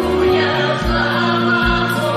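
Mixed choir of men and women singing a gospel song, holding long notes on 'Glory Hallelujah', over a steady low bass accompaniment.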